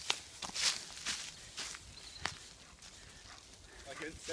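Footsteps crunching through a thick layer of dry fallen leaves, about two steps a second, growing fainter after the first couple of seconds.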